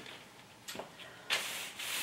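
Parchment-paper pattern piece rustling and rubbing against cotton fabric as it is slid into place: a faint brush about three-quarters of a second in, then a soft, steady rustle through the second half.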